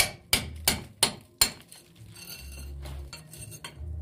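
A hammer striking a steel chisel, which cuts a groove along a mortar joint in a brick wall for concealed wiring: five sharp clinking blows, about three a second, then a pause of about two seconds before the next blow near the end.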